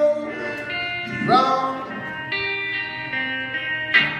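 Live band music in a quiet passage: electric guitar chords ringing, with a short sung phrase about a second in.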